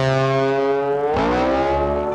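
Rock intro sting on distorted electric guitar: a held chord that bends upward in pitch a little past halfway, then rings on.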